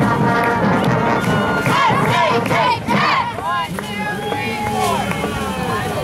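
A group of cheerleaders shouting a cheer together: a run of high-pitched yells through the middle, with brass band music trailing off in the first second.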